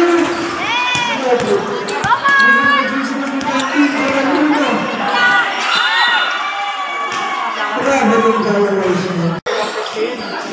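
Youth basketball game sounds: a ball bouncing on the concrete court amid players and spectators shouting.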